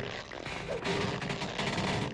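Cartoon scrubbing sound effect: a fast, continuous run of rough rubbing strokes as makeup is scrubbed off a face without coming off.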